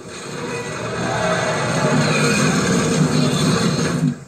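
A film soundtrack heard through a TV speaker: a swell of orchestral music over dense battle noise, building up over the first second and then holding loud and steady.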